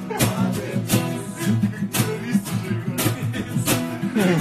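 Acoustic guitar strummed in chords, a steady rhythm of down-strokes.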